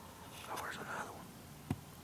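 A person whispering briefly, about half a second in, followed by a single sharp click near the end.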